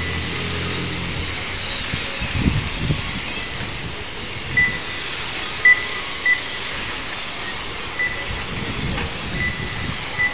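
Electric 1/12-scale on-road RC race cars running laps, their motors giving a high whine that rises and falls as they speed up, brake and pass. Short high beeps sound several times.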